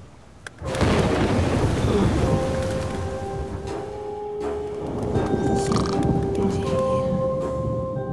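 Cartoon storm sound effects: a sudden crack of thunder about a second in, then the steady noise of a thunderstorm and rain. Soundtrack music holds long sustained notes over it.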